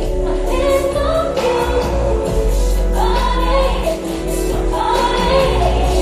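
Live concert music from a slow R&B song: sustained synth chords over a steady deep bass, with a woman singing long, gliding notes over them.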